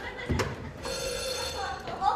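A telephone ringing, a steady high ring that sets in about a second in, with a short knock just before it.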